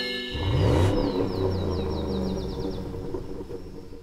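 Logo sting for an animated end card: a chime chord rings out, then a deep rumble swells about half a second in, topped by a quick run of short, high, falling chirps. It all fades toward the end.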